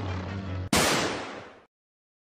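The film's soundtrack music cuts off and a single loud bang sound effect hits, ringing and fading away over about a second into silence.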